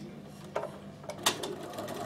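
A few irregular sharp clicks and small knocks from a Bernina sewing machine as fabric is set under the presser foot.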